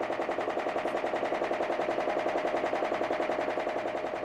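Boat engine running steadily, a rapid even putter of about a dozen beats a second with a steady hum over it.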